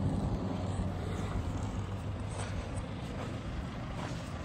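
A car approaching over a dirt track, its engine running steadily.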